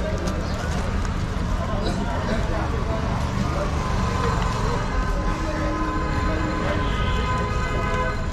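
Busy street ambience: steady traffic noise and people's voices, with a held pitched tone in the second half.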